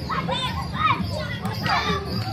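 Children shouting and calling out to each other while playing, several high voices overlapping, over a steady low hum.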